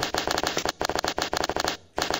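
A rapid run of sharp crackling pops, like a string of firecrackers going off, many per second. It breaks off briefly near the end and then starts again.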